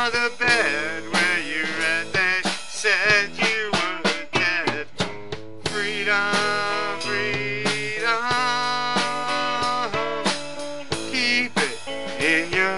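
Live band music without words: guitar playing bent, wavering lead notes over drums.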